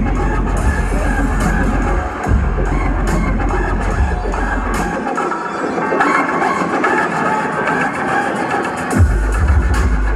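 Bass-heavy dubstep from a DJ set played loud over a club sound system, recorded on a phone. About halfway through, the deep bass cuts out for a few seconds and then crashes back in near the end.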